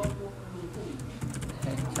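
Computer keyboard keys clicking in two short runs as text is typed, over a steady low hum.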